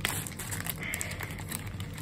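Small plastic zip bag of board-game tokens being handled: crinkling plastic with scattered light clicks of tokens knocking together as one is picked out.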